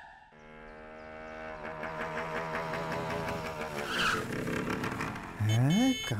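Motorbike engine running steadily and growing louder, with a short high squeal about four seconds in.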